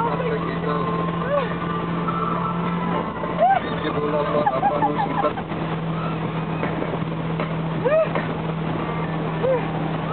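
Motorboat engine running steadily at speed, with water rushing in its wake. Voices let out short rising-and-falling shouts a few times.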